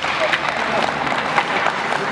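An audience applauding: steady, dense clapping, with voices heard now and then underneath.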